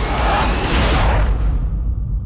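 Film-trailer sound design: a loud noisy whoosh over a deep low rumble, its hiss fading away over the second half while the rumble goes on.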